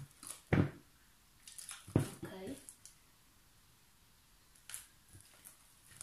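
Hands kneading a large, soft fluffy slime of glue, shaving foam and boric acid in a plastic bowl, giving a few short wet squelches, the loudest about half a second in and at about two seconds, with quieter handling between.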